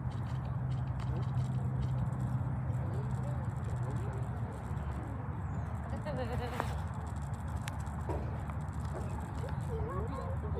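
Indistinct distant voices of players and spectators calling across a soccer field, over a steady low rumble. One sharp click about two-thirds of the way through.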